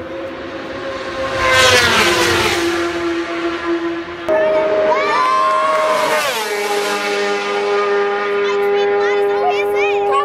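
Racing motorcycle engines passing at high speed. Each engine note holds steady on the approach and then drops in pitch as it goes by: once about two seconds in, and again about six seconds in, when a racing sidecar outfit passes. The second engine cuts in suddenly about four seconds in, and spectators' voices are heard.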